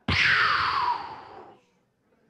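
A forceful breath blown into a handheld microphone: a pop at the start, then a rushing hiss that falls in pitch and fades out over about a second and a half.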